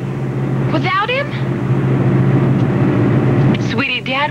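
Steady engine and road noise heard from inside a moving car, a low hum without a break. A short spoken phrase comes about a second in, and speech starts again just before the end.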